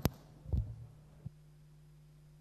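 Handling noise on a desk gooseneck microphone: a sharp knock, then a duller low thump about half a second later, and a small click a little after that. After the click only a steady low hum remains.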